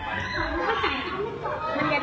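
Several voices talking over one another in lively chatter.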